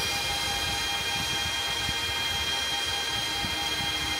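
Full-size ASIC Bitcoin miners running, their high-speed cooling fans making a steady rush of air with several high, steady whining tones on top.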